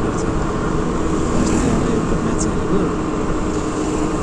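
Steady engine and road noise of a Hero two-wheeler being ridden along a road, with wind rushing over the microphone.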